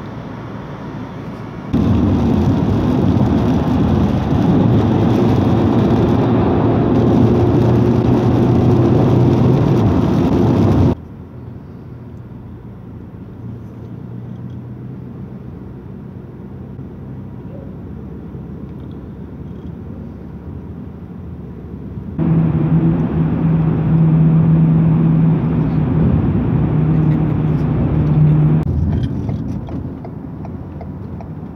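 Road and engine noise inside a moving car, steady within each stretch but changing abruptly twice. It is loud with a steady low drone for about nine seconds, then much quieter for about eleven, then loud with a drone again for about six seconds.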